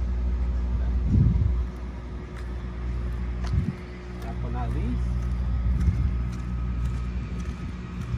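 A steady low mechanical drone, like a motor running nearby, with a couple of brief low bumps and faint voices.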